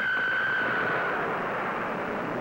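Jet engine running: a steady rushing noise with a high whine that fades out about a second in.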